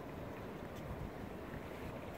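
Steady low rumble of wind buffeting the microphone over quiet open-air ambience, with no distinct events.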